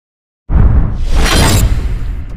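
Cinematic logo-reveal sound effect: a sudden hit about half a second in, with a deep rumble and a shattering, crashing noise that brightens toward the middle.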